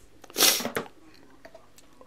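A short, sharp breath noise from a man close to the microphone, about half a second in, like a quick sniff or huff.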